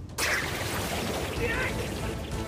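Anime fight-scene sound effects: a steady rushing noise that starts suddenly just after the start and holds at an even level.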